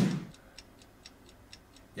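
Countdown-clock ticking sound effect from a quiz video: a quick, even run of faint ticks while the answer time runs.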